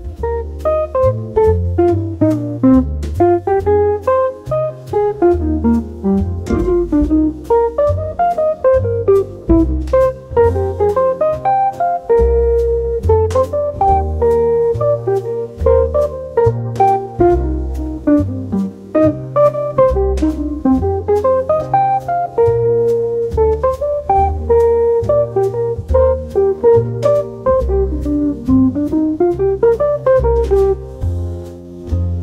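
Instrumental smooth jazz: a plucked guitar melody over a moving bass line, with light drum-kit time.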